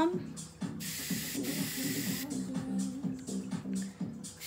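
H2Ocean piercing aftercare spray can spraying onto a cotton swab: one steady hiss of about a second and a half, starting about a second in.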